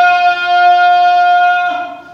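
A man's voice calling the adhan, the Islamic call to prayer, holding one long steady note that trails off near the end.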